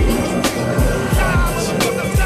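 Hip hop music with a steady beat of deep bass-drum hits and sharp snare hits.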